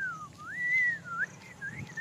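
A man whistling through pursed lips: two long rising-and-falling notes, then a few shorter ones.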